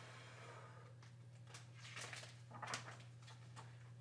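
Faint puff of breath blown toward a picture book, then a soft rustle of its paper page turning about two and a half seconds later, over a steady low electrical hum.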